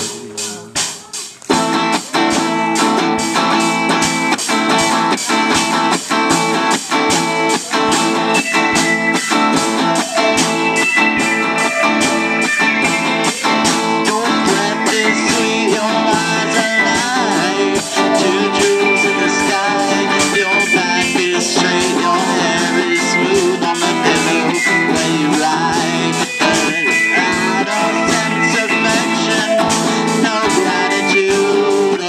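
Live rock band playing: two electric guitars through small practice amplifiers, with a drum kit. After a sparse first second and a half the full band comes in, with a steady drum beat under the guitars.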